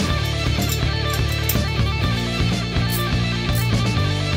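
Background rock music led by guitar, with a steady beat.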